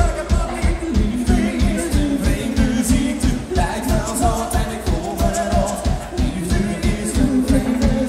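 Live rock band playing: a man singing lead over electric guitar, bass, keyboards and a steady drum beat.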